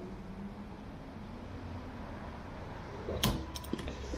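Gas pump nozzle topping off a fuel tank: a steady faint rush of fuel flowing, then a sharp click and a few lighter clicks from the nozzle a little after three seconds in.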